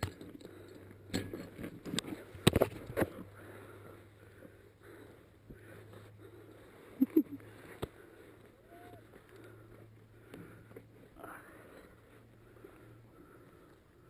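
Close rustling, scraping and knocks as a paratrooper moves about in tall grass after landing, his gear brushing the helmet-mounted camera. The sounds are loudest and busiest in the first three seconds, then fainter, with two sharp knocks about seven seconds in.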